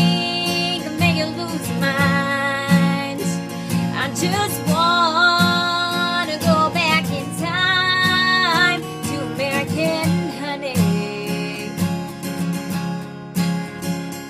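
A woman singing a country song in long, held phrases over a steadily strummed acoustic guitar.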